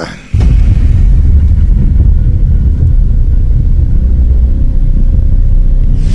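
Loud, steady deep bass rumble that cuts in suddenly about a third of a second in: the opening of the radio show's intro.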